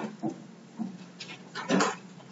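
A few short, indistinct vocal sounds from students in a lecture hall, scattered through the pause, the loudest just before the end.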